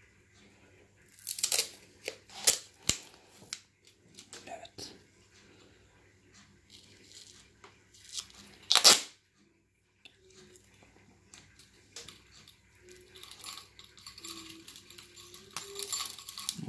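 Black heavy tape being pulled off its roll in several short rips, the loudest about nine seconds in, as it is wound around a stroller's handle tube.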